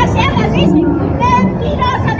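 A crowd of people shouting and calling out over one another, many high, strained voices at once, over a steady low rumble.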